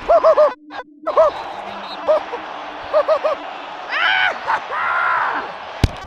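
Men shouting short, repeated calls in quick groups of two or three, then a longer held shout, over steady stadium crowd noise. Two sharp knocks near the end.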